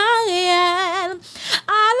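A woman's voice singing a French-language gospel hymn unaccompanied, holding long wavering notes, with a short pause for breath just past a second in before the next line begins near the end.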